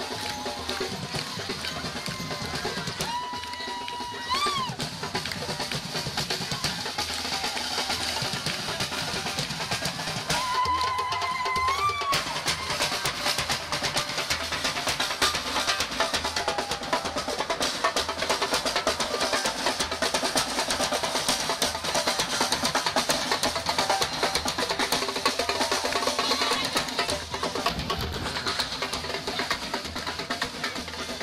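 Parade drumming: snare and bass drums playing a fast, steady beat with rolls, continuing throughout. Twice, about three seconds in and again about ten seconds in, a held pitched note sounds over it and bends upward at its end.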